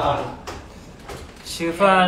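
A man speaking Thai into a phone mic, with a pause of about a second between phrases.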